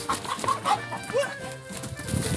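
Black Kadaknath chickens give a few short clucking calls over background music.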